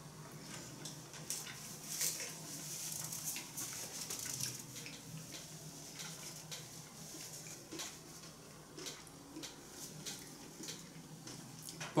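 Quiet chewing of sushi rolls, with faint scattered clicks and taps of chopsticks and a fork.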